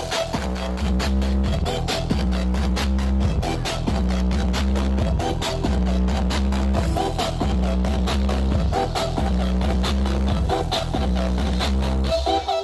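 Electronic DJ dance remix played through a truck-mounted mini sound system, with a heavy bass line that repeats in an even pattern under a steady beat.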